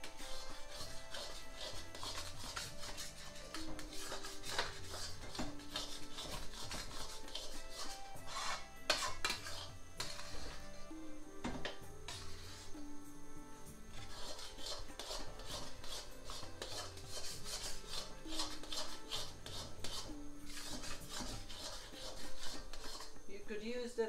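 A metal spoon stirring thick semolina halwa in a stainless steel pan, with repeated scraping strokes against the pan's bottom and sides.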